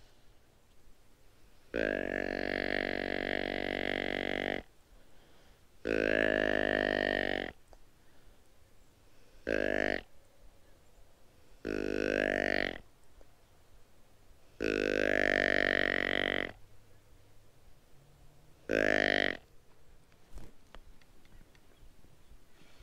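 Hand-held deer call blown six times to draw in whitetail deer: drawn-out, deep calls, the first and longest nearly three seconds, the shortest well under a second, with pauses between.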